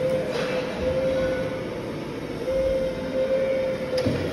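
Steady electric whine of a forklift's hydraulic lift, wavering slightly in pitch, over a mechanical rumble as a reach truck is tipped upright. About a third of a second in there is a short scrape or creak.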